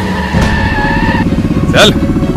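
Motorcycle engine running with a rapid, even beat under film music, and a voice calls out briefly near the end.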